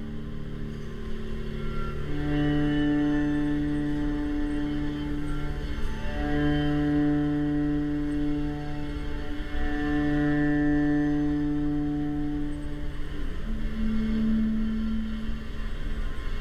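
Bowed strings of a string quartet holding long, overlapping notes of several seconds each in slow contemporary chamber music, with a low hum underneath.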